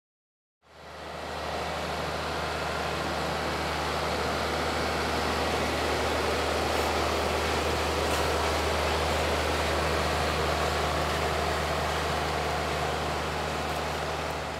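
Self-propelled crop sprayer's engine running steadily as it drives across the field, with a low hum and a broad hiss. It fades in from silence just under a second in.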